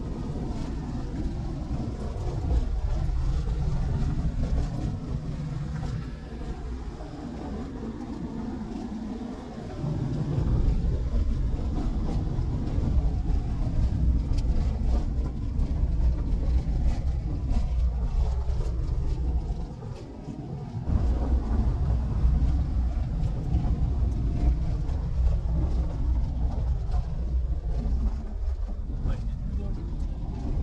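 A vehicle driving along a rough dirt road, heard from inside: steady low engine and tyre rumble with road noise, easing off twice, about a third of the way in and again about two-thirds in.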